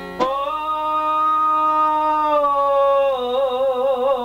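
A man singing an Albanian folk song, holding one long note that steps down slightly in pitch about halfway and then wavers in ornamented vibrato, with a plucked long-necked lute accompanying.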